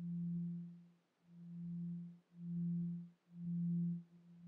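A low, steady drone tone with one faint overtone above it, swelling and fading away roughly once a second in a regular beating pulse.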